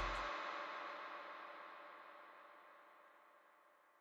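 The end of a hip-hop track: its last chord rings on and fades away to silence over about three and a half seconds.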